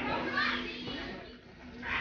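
Indistinct voices with a small child's chatter and vocal sounds, over a steady low hum.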